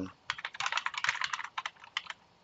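Computer keyboard being typed on: a quick run of key clicks lasting about a second and a half, a short command of about nine keystrokes ending with Enter.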